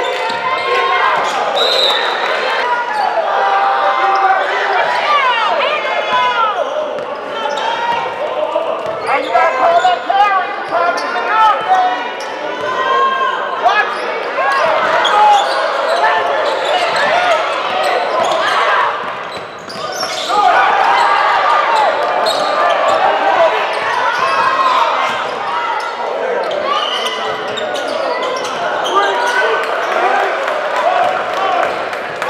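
A basketball game in play in a gymnasium: a ball dribbling and bouncing on the hardwood court, under a steady din of unintelligible voices echoing in the hall.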